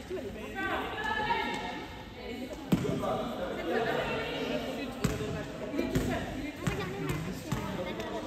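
Basketball bouncing on a gym floor, a handful of single bounces at uneven intervals, over background voices in the hall.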